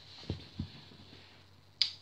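Two soft low thumps, then a single sharp click near the end.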